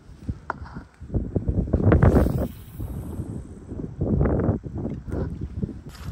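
Wind buffeting the phone's microphone in uneven low rushes, strongest about two seconds in and again about four seconds in.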